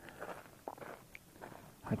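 Faint footsteps and soft scuffs on a dirt lakeshore, a few quiet steps in an otherwise still outdoor setting; a man's voice starts right at the end.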